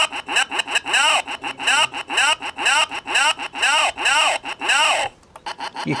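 Circuit-bent 'No button' toy's voice chip, run from a 9-volt battery through current-limiting resistors, stuttering out a buzzy, rasping warble instead of the word 'no'. The short rising-and-falling chirps repeat about twice a second and stop suddenly about five seconds in. The supply current is held too low for the chip to articulate the word.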